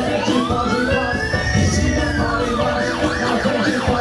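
Live band music with a siren-like sound effect over it. The effect sweeps up in pitch for about two seconds, falls back, then warbles quickly up and down near the end.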